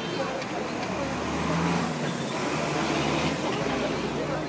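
Street traffic noise from vehicles stuck in a crowded street, with a motor vehicle's engine running close by. Its low hum swells about a second in and eases near the end, under faint crowd chatter.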